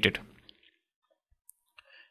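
The end of a man's spoken sentence, then a pause of near silence with a few faint, short clicks.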